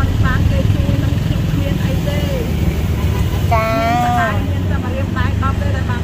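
A woman talking over a steady low background rumble.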